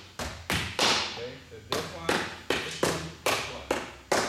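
A rattan eskrima stick striking a padded, helmeted sparring dummy over and over: a quick, uneven series of about ten sharp hits, each ringing briefly in the hall.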